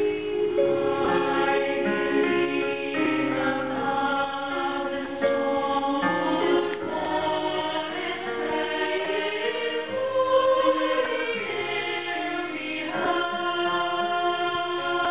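Women's choir singing in several-part harmony, holding chords, with one line swelling up and back down near the middle.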